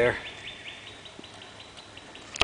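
A faint, rapid series of high bird chirps, about six a second, that fades out about a second in, over a quiet outdoor background.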